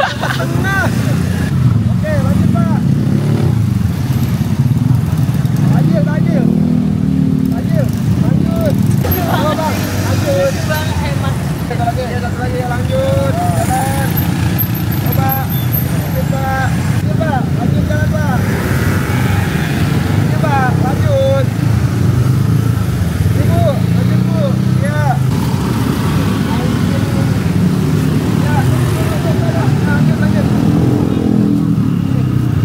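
Busy road traffic at close range: a steady low drone of motor scooter and car engines passing by, with people's voices talking over it.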